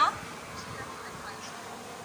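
A woman's short, high exclaimed 'Ha?' right at the start, then a low, steady background noise with no clear pattern.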